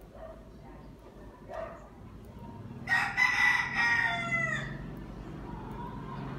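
A rooster crowing once: one long call starting about three seconds in and falling in pitch at the end.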